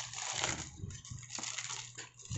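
Plastic bubble wrap crinkling and rustling as it is pulled and peeled off a small cardboard box, with a few sharp crackles.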